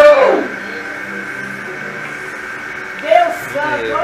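A man preaching through a handheld microphone, loud at the very start and again about three seconds in, with a pause between. Soft, sustained background music holds steady chords under the pause.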